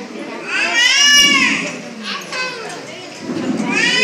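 Children's voices: two long, high-pitched drawn-out calls, rising and falling in pitch, one about a second in and another near the end, over a background of chattering voices.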